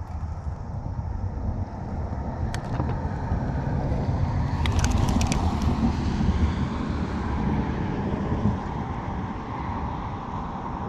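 Wind buffeting a chest-mounted GoPro's microphone: a steady low rumble that swells around the middle. A short run of sharp clicks about five seconds in, and a single click earlier.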